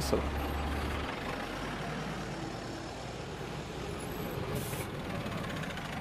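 City midibuses pulling away from a stop: a low engine rumble that drops off about a second in, over steady traffic noise, with a short hiss of air from the brakes about four and a half seconds in.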